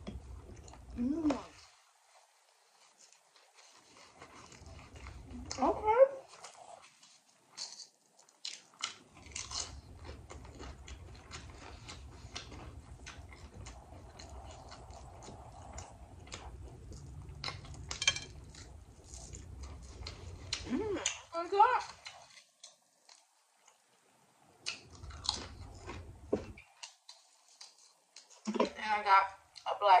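Close-miked chewing of a mouthful of grinder salad sandwich: wet chewing with many sharp mouth clicks and smacks, broken by a few short hummed 'mmm' sounds that rise and fall in pitch.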